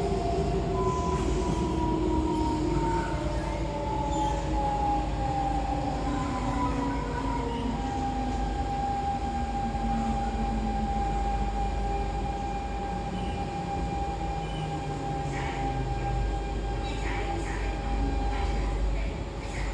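Siemens C651 metro car heard from inside: the GTO-VVVF inverter and traction motors whine in several tones that slide steadily down in pitch as the train slows, over a steady rumble of wheels on track.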